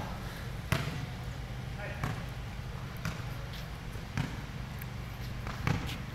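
A basketball bouncing on a concrete court floor: about five sharp bounces roughly a second apart, the first the loudest, over a steady low hum.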